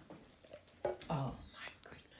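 A person's voice, brief and quiet, about a second in, starting just after a sharp click.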